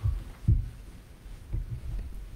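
Low, dull thuds of a person leaning on and brushing against a cloth-covered table that carries a microphone. The loudest comes about half a second in, with softer ones near the end.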